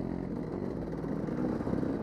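Dirt bike engine running at a fairly steady speed while riding along a dirt trail, heard from the rider's position.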